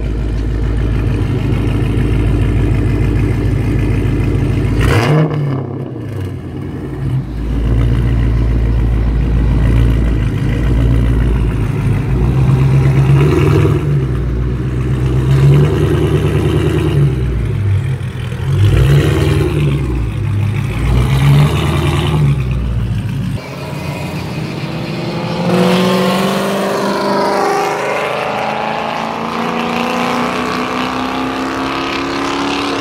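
Hemi V8 in a Chrysler 300C, heard at its tailpipe through a three-inch to two-and-a-half-inch exhaust with five-inch tips. It idles, then revs up and settles back several times. Near the end the engine sound stops and a vehicle is heard accelerating past with a rising pitch.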